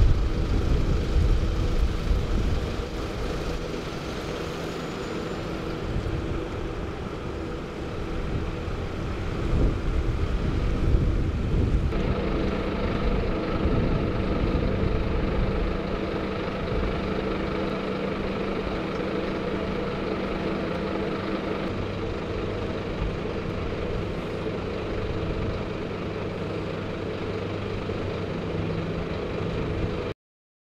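Ambulance engines idling with a steady low hum, with louder rumbling in the first couple of seconds and again around ten seconds in.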